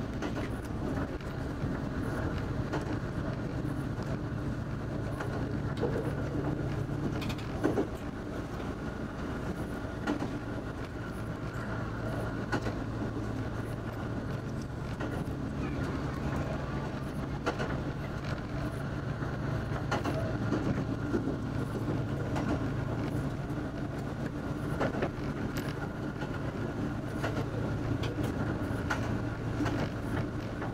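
Diesel railcar running steadily along the track as heard from the driver's cab: a constant engine drone, with scattered clicks of the wheels over the rail and a sharper knock about a quarter of the way through.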